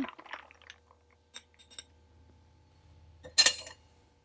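A metal bar spoon stirring ice in a tall glass, giving a few faint clinks against the glass, then a louder clink and rattle of ice and glass near the end.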